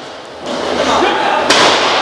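A single sharp smack about one and a half seconds in, a wrestler's blow landing in the ring, over a steady murmur of crowd and hall noise.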